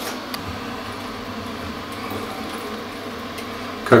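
A steady low hum with a couple of faint clicks.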